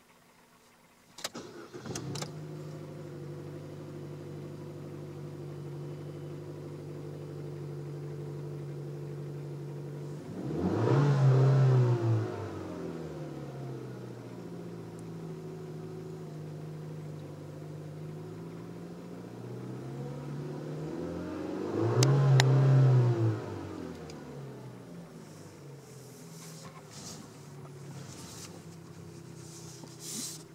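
Chevrolet Cruze four-cylinder engine, heard from inside the cabin, cranking briefly and catching about a second in, then idling steadily. It is revved twice, at about a third and two thirds of the way through, each rev rising and falling back to idle over about two seconds.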